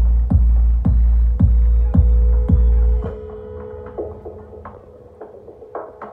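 Electronic dance music through a PA system: a heavy kick drum a little under twice a second under a held synth drone. About halfway through the beat and bass drop out, leaving the drone and a few soft clicks.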